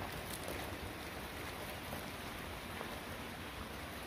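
Steady soft hiss of outdoor background noise, with a few faint ticks.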